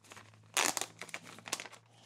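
Small plastic parts bag crinkling as it is handled and a rocker arm and spring are put into it: a quick run of irregular crackles starting about half a second in.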